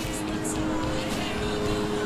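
Steady street traffic noise with faint music, a few notes held evenly throughout.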